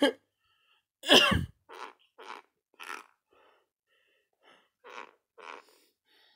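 A person coughing: one loud, harsh cough about a second in, then several short, quieter bursts.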